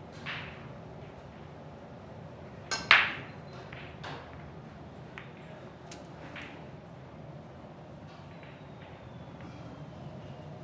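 Break shot in Chinese eight-ball (heyball): the cue tip clicks against the cue ball, and a fraction of a second later comes a loud crack as the cue ball smashes into the racked balls. Over the next few seconds there are scattered smaller clicks as the spreading balls knock into each other and the cushions.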